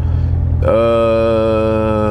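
A person humming one long held note, starting about two-thirds of a second in and drifting slightly down in pitch, over the steady low drone of a car idling.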